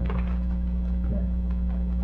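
Steady electrical mains hum with a stack of evenly spaced overtones, the recording's background noise, with a faint short sound about a second in.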